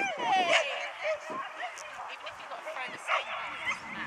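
A dog giving a few short, high yips, mostly in the first second and once more around three seconds in, over people's voices in the background.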